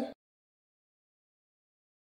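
Dead silence: the sound track drops out completely just after the start, following the tail end of a spoken phrase.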